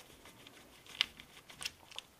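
Red tamper-evident 'VOID' warranty sticker being picked and torn away with gloved fingers: a few short, soft crackles, the sharpest about a second in.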